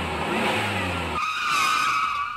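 Vehicle sound effect: an engine rumbles steadily, then a little over a second in the rumble drops away and a high, wavering tyre squeal takes over.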